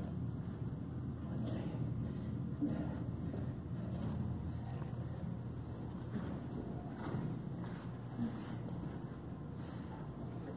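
Slow footsteps climbing carpeted stairs: soft, irregular scuffs about once a second over a steady low hum.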